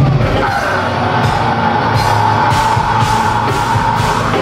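Heavy metal band playing live, with distorted guitars and drums under a long held high scream that starts about half a second in and holds until near the end.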